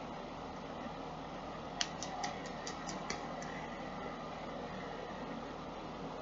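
Steady background hiss with a quick run of about seven small clicks, fading away, about two seconds in, as a plastic lip gloss tube is handled and opened.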